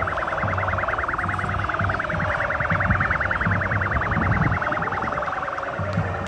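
An electronic siren pulsing rapidly and evenly, about a dozen pulses a second, over the noise of a large crowd with low, repeated thuds.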